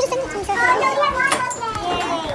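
Several young voices talking over one another in indistinct chatter, with a few sharp knocks of the phone being handled close to the microphone.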